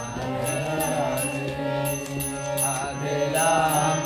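Harmonium playing sustained chords under a chanted devotional melody, with small hand cymbals ringing in a steady beat.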